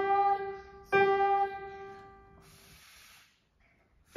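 Casio electronic keyboard in a piano voice, played one note at a time: a note ringing at the start and a second struck about a second in, each left to die away slowly. A short soft hiss follows near the end, then a moment of near silence.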